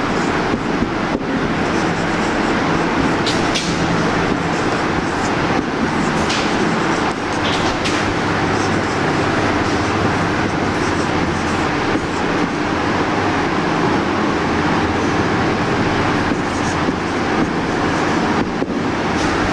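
A loud, steady mechanical drone with low humming tones throughout, with a few short, faint high squeaks of a marker writing on a whiteboard in the first half.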